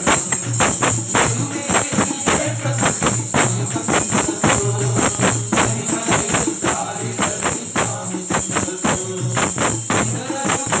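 Devotional bhajan: men singing into a microphone to a steady, driving tambourine beat, the jingles struck several times a second.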